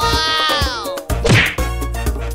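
A descending whistle-like tone lasting about a second, then a loud whack about a second and a half in as an axe comes down on a log, over upbeat background music.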